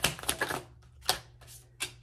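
A deck of tarot cards being handled as cards are pulled off and laid down: a handful of sharp, irregular card snaps and clicks, more of them in the first second.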